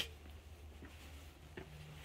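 Faint footsteps on a stone-slab floor, three soft steps under a second apart, the first the sharpest, over a low steady hum.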